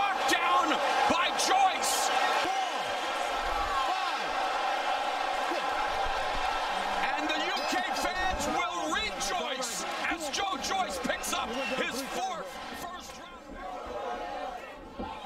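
Boxing arena crowd yelling, many voices overlapping, with sharp slaps and cracks scattered through, most of them in the second half. It gets quieter near the end.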